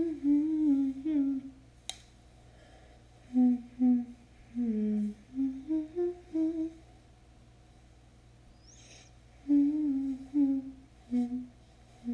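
A young woman humming a wordless tune with her mouth closed, in three short melodic phrases with pauses between them.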